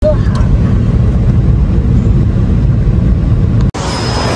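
Steady low road and engine rumble inside a moving car's cabin, cutting off abruptly near the end.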